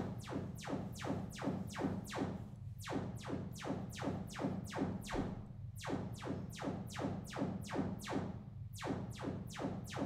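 Sonos Era 300 speaker playing its Trueplay room-tuning test signal. It is a rapid series of falling sweeps, about three a second, in runs of about three seconds with short breaks between them, over a steady low hum.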